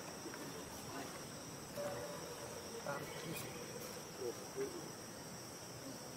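Insects buzzing steadily at a high pitch, with a few faint short squeaks about two-thirds of the way through.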